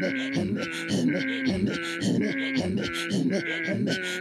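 Inuit throat singing (katajjaq) by two women face to face: a fast, steady rhythm of alternating pitched voice and breathy grunting sounds, about three pulses a second.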